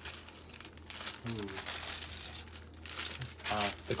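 Plastic packaging crinkling and crackling as it is handled and torn open, in a dense run of small crackles.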